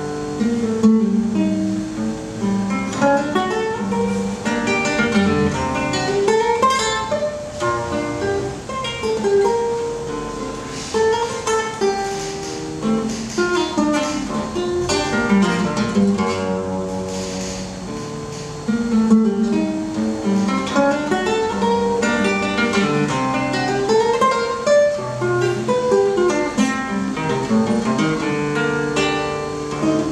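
Solo classical guitar played fingerstyle: a continuous piece of plucked melody notes and chords. It softens briefly a little past the middle, then comes back louder.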